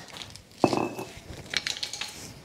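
Light metal clinks and knocks of a removed engine part and hand tools being handled: one sharper knock with a brief ring about two thirds of a second in, then a cluster of small clicks near the end.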